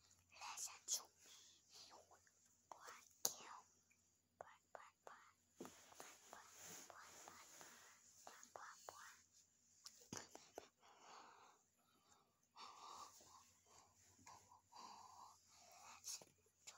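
A child whispering very quietly, close to the phone's microphone, with a few soft clicks in between.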